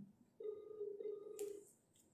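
A steady electronic telephone tone, a little over a second long, like a call ringing out. There is a short click near the end of the tone.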